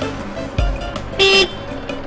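A single short car horn toot about a second in, the loudest sound, over background film music with a low beat.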